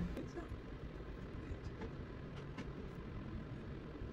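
Faint room tone: a low, steady background rumble with a few soft clicks.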